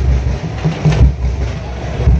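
Loud, low, pulsing rumble of festival drumming heard amid the noise of a dense crowd.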